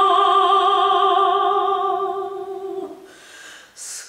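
A woman's operatic voice, unaccompanied, holding one long steady note that ends about three seconds in, followed by a short pause.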